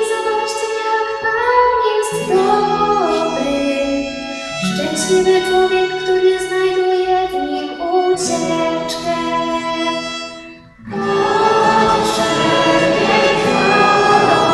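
Choir of girls and young women singing a church song with violin accompaniment, in held, phrased lines. The music drops away briefly about ten and a half seconds in, then comes back fuller.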